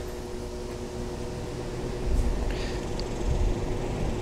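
Lasko 20-inch box fan running at its lowest speed, a steady electric-motor hum with the rush of its blades moving air. A brief low rumble comes about halfway through.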